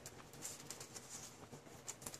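Faint rustling and light scattered ticks of a paper sticker roll being turned and unrolled by hand.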